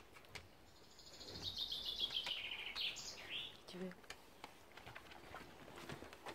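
A bird singing faintly in the background: a descending trill of rapid, high notes lasting about two seconds, ending in a short flourish.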